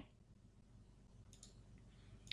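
Near silence with two faint computer-mouse clicks about a second and a half in.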